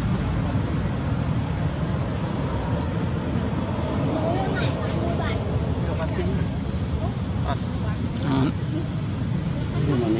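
Steady low outdoor rumble with faint voices mixed in, and a few brief sharper sounds about halfway through and again a little after.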